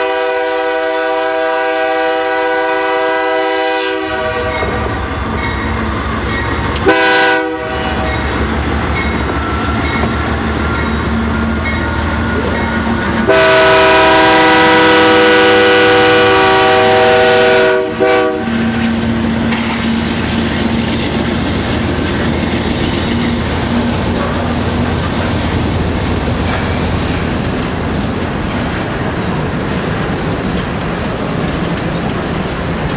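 Freight locomotive horn sounding a long blast, a short one, then a longer and louder blast as the train draws up and passes. Between and after the blasts come the steady rumble and clickety-clack of loaded covered hopper cars rolling by, with the drone of the locomotive's diesel engine.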